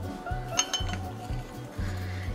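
A spoon stirring liquid in a glass measuring cup, clinking against the glass with a short ringing chink about half a second in, over background music with a steady bass beat.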